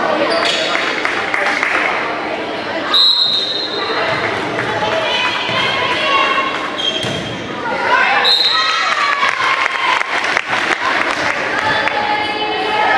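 Volleyball match sounds in a gym: voices of players and spectators, a referee's whistle blown twice, about three seconds in and again a little after eight seconds, and the thuds of the ball being struck, echoing in the hall.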